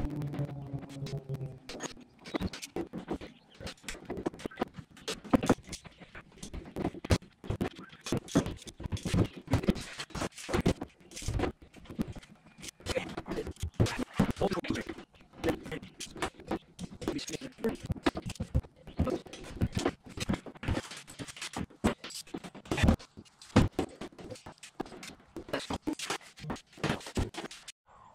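Rapid, irregular clicking and clattering of hand tools and parts being handled while working on a jet ski's oil filter.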